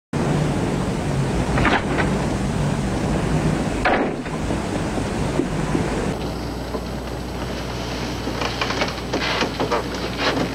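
Door sounds from an old film soundtrack: a few sharp clicks and knocks of a door latch and handle over a steady rushing noise. An abrupt cut about six seconds in brings a different background and a quick cluster of clicks.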